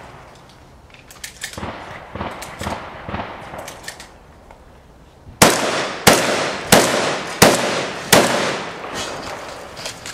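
Five rifle shots fired at a steady pace, about two-thirds of a second apart, each followed by a short echo.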